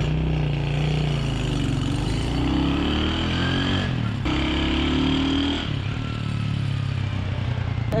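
Honda Win motorcycle engine under way. Its pitch rises as it pulls, breaks off briefly about four seconds in at a gear change, runs steadily, and then eases off near six seconds. The engine runs smoothly, and the buyer judges it a nice-sounding engine.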